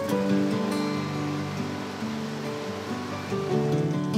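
Background music with held notes and a soft wash of noise under it.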